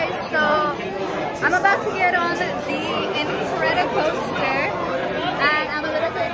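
People talking and chattering, the voices following one another throughout.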